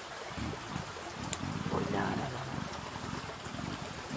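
A low, muffled voice murmuring quietly over the steady trickle of a woodland stream, with one sharp click about a second in.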